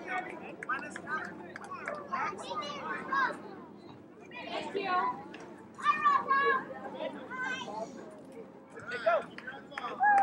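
Indistinct background chatter of several voices, some of them high-pitched, none of it clear speech.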